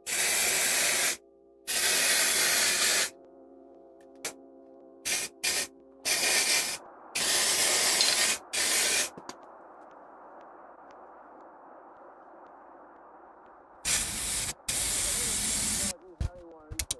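Aerosol spray can of primer hissing in repeated bursts, each from a split second to about a second and a half long. After a pause of several seconds come two final bursts near the end.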